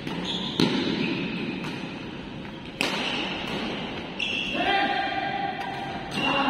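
Badminton rally in a large hall: sharp racket strikes on the shuttlecock, the loudest about half a second in and another near the three-second mark, between shoes squeaking on the court floor.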